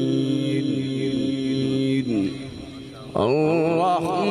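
A man reciting the Quran in the melodic tajweed style through a microphone and loudspeakers, holding long ornamented notes. The voice falls away about two seconds in and comes back about a second later with a rising, wavering phrase.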